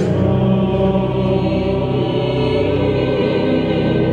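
Mixed choir singing a slow Kyrie in sustained chords, with pipe organ holding deep bass notes underneath, in a reverberant cathedral. A new chord begins right at the start.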